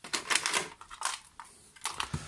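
Irregular clicks and rattles of metal and plastic parts being handled as the metal mounting plate with its VU meters is lifted out of the plastic case.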